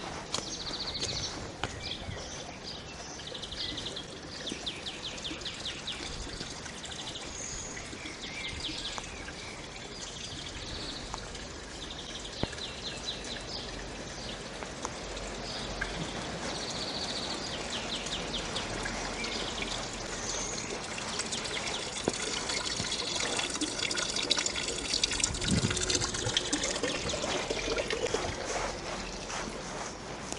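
Water running and trickling from a stone wall fountain, a steady splashing that grows louder in the second half. Small birds chirp and trill repeatedly through the first half.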